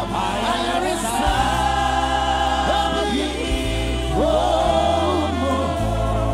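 Gospel choir of mixed voices, a lead singer with backing vocalists, holding sustained worship harmonies with sliding notes between them, over a low sustained accompaniment that changes chord a few times.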